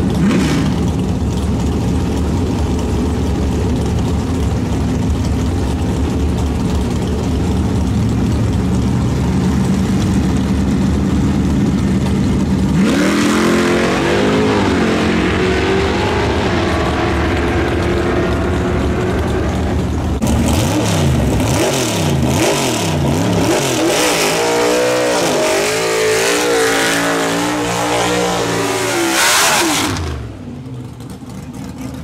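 Drag-race car engines at a drag strip. For the first 13 seconds a loud engine runs steadily at the line, then a car launches and its revs climb and fall through the gears as it pulls away. From about 20 seconds in, a 1955 Chevrolet's V8 revs hard and unevenly through a smoky burnout, with tyre noise.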